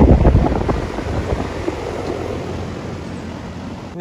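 Goodman central air conditioner's outdoor condenser unit running with a steady low hum from its fan and compressor, freshly cleaned and already cooling. Wind buffets the microphone, loudest in the first second, then everything grows slowly quieter.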